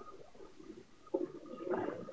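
A pause in a man's speech: mostly quiet, with a faint short sound about a second in and a faint murmur of his voice near the end, just before he laughs.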